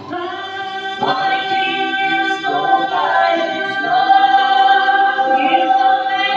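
Gospel quartet of men's and women's voices singing in harmony, holding long notes, with one long held chord near the end.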